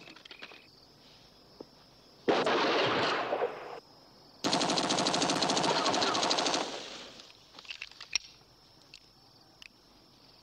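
Two bursts of machine-gun fire, rapid and evenly spaced shots: the first lasts about a second and a half, the second about two seconds. A few faint clicks and pops follow.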